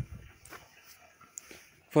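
Old paper comics being handled: a soft thump right at the start as one is set down, then faint rustling and a few light ticks of paper.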